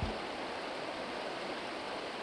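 Shallow river running steadily over stones and gravel, an even rushing of water.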